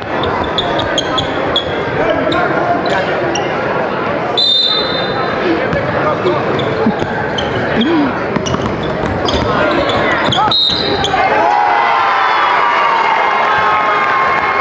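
Live basketball game sound in a gym: a ball bouncing on the hardwood court under a steady din of crowd voices and shouts, with a short shrill squeak twice.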